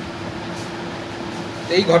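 Steady background hiss with a low, even hum, the room noise of an indoor press conference heard in a pause between a man's sentences. His speech starts again near the end.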